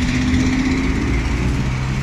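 Street traffic: a motor vehicle's engine running close by with a steady low hum and road noise.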